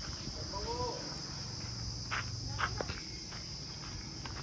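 A steady high-pitched buzz like insects calling, over a low steady hum, with a few faint clicks about halfway through.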